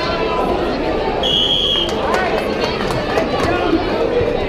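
Referee's whistle: one short, shrill blast a little over a second in, over the steady chatter and shouting of a gym crowd.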